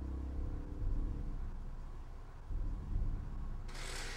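Uneven low rumbling background noise, with a short burst of hiss near the end.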